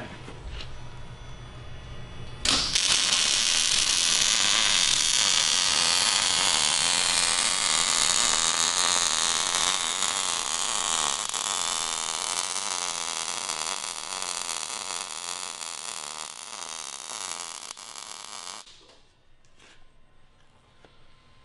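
Wire-feed welding arc crackling steadily as a bead is run. It strikes about two and a half seconds in and cuts off shortly before the end, with a low hum before it starts.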